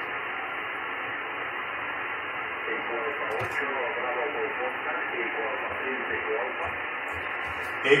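Steady hiss from an amateur radio transceiver's speaker tuned to the RS-44 satellite downlink, cut off sharply above about 3 kHz. A faint voice wavers in the noise in the middle, and a strong station's reply comes in abruptly near the end.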